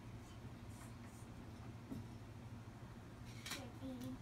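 Quiet room hum with faint soft knocks and rustles of a toddler handling plastic toys, then near the end a brief sharp sound and a short falling vocal sound from the child.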